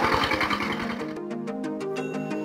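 Diesel engine of a walk-behind hand tractor running under load while tilling, its exhaust pulsing rapidly and evenly; it fades out within the first second as background music with a stepping melody of plucked notes comes in.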